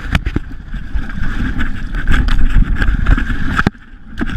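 Dirt bike crashing into brush: the engine running amid a rapid series of rough knocks and scrapes as bike and rider go down through the vegetation. The sound drops off sharply near the end.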